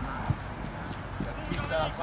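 Players shouting to each other across a football pitch, the voices distant and strongest near the end, with two dull thuds from play, one shortly after the start and one past the middle.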